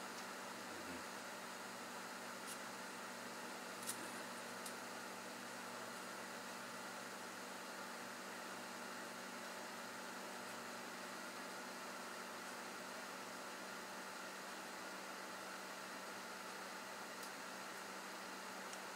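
Steady faint hiss with a faint hum from a running high-frequency solid-state Tesla coil setup, its flame-like arc burning continuously, with a few faint ticks.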